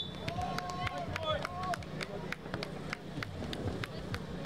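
Players' shoes and the ball on an outdoor basketball court: a string of sharp, irregular taps and footfalls, over a steady low hum.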